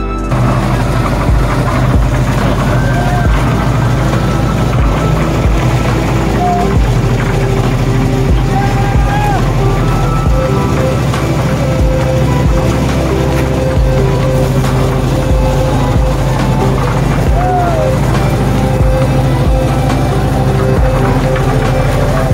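Engine of a drum concrete mixer running steadily as the drum is loaded, mixed with background music and voices.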